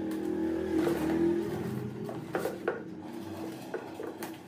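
Scissors blade slitting packing tape on cardboard boxes, with scraping and a few sharp tearing sounds in the second half, over a steady low hum.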